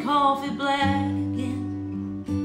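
Steel-string acoustic guitar played in a slow country song, with a woman's singing voice over it for about the first second. After that the guitar chords ring on alone.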